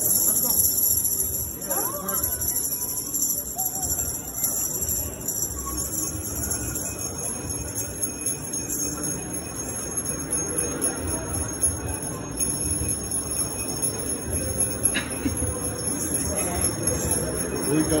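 Jingle bells ringing steadily, with a murmur of voices underneath.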